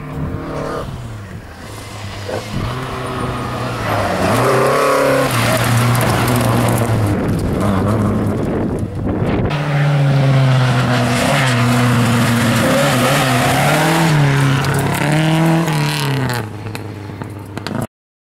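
Historic rally car engines revving hard on a gravel stage, pitch climbing and dropping again and again through gear changes, with gravel scraping under the tyres. There is a sudden break about nine seconds in, then another run, and the sound cuts off just before the end.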